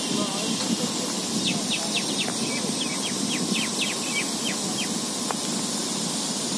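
Pop-up lawn sprinklers hissing steadily as they spray water over grass, over a low rumble of city traffic. About a second and a half in, a quick run of short high chirps starts and goes on for about three seconds.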